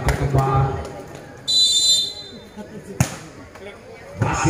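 A referee's whistle blown once, a short high steady blast in the middle: the signal for the serve in a volleyball match. About a second later comes one sharp thud of a volleyball bouncing on the concrete court.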